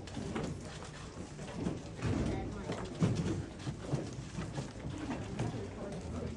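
Indistinct background chatter of several people talking in a hall, with a few light knocks and handling noises.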